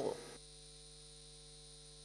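The voice-over ends about a third of a second in. What remains is a faint, steady electrical hum with light hiss on the audio line.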